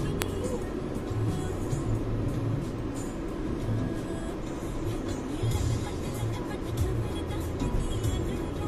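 Steady road and engine rumble of a car driving at highway speed, heard from inside the cabin.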